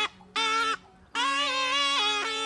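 A snake charmer's been (pungi), the gourd pipe with reeds, playing a nasal melody over a steady drone. The tune comes in two phrases: a short one near the start, then a longer one from about a second in.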